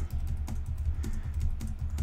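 Typing on a computer keyboard: a run of irregular key clicks over a low steady hum.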